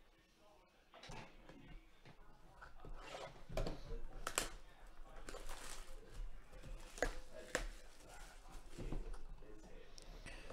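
Plastic shrink-wrap on a cardboard trading-card box crinkling under the hands, irregular rustling with a few sharper crackles.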